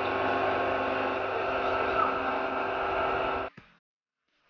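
A motor running steadily with an even, unchanging hum, cutting off suddenly about three and a half seconds in.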